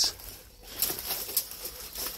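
Footsteps crackling through dry leaf litter and twigs in undergrowth: a few irregular short crackles and rustles.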